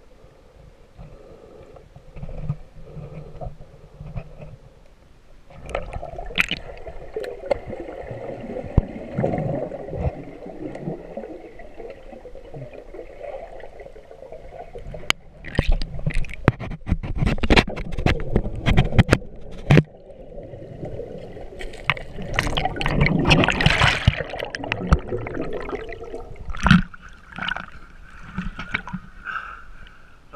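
Underwater sound of water gurgling and churning around a submerged camera, with a run of sharp clicks and knocks about halfway through and a louder surge of water noise after it.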